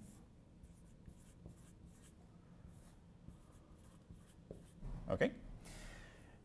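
Dry-erase marker writing on a whiteboard: a string of faint, short scratchy strokes.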